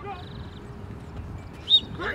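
Faint outdoor background noise with one short, high-pitched chirp near the end.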